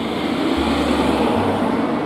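Steady rumble of road traffic in a street, swelling slightly around the middle.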